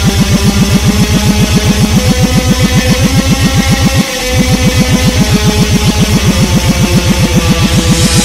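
A black-metal instrumental played backwards: a dense, distorted wall of sound over rapid low pulses, about eight a second. The pulses break off briefly about halfway through.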